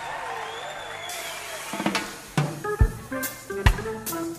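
Reggae band live on stage beginning a song: after a couple of seconds of stage sound, the drum kit comes in about halfway through with snare and kick-drum hits, and pitched notes from the other instruments join at once.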